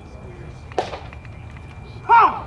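Steady low ballpark background noise with one short shout about a second in.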